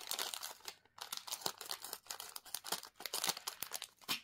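Close-up handling noise of small jewellery parts and tools on the work surface: an irregular crinkly rustle made of many small clicks, pausing briefly twice.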